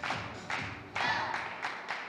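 Supporters clapping together in a steady rhythm, about two claps a second, each clap ringing briefly in the hall.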